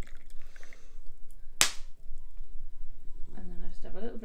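Tea pouring from a ceramic Cornishware teapot into a mug, followed by one sharp clack about one and a half seconds in as the pot is set down.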